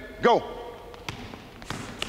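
Basketball dribbled on a hardwood gym floor: a sharp bounce about a second in and another near the end.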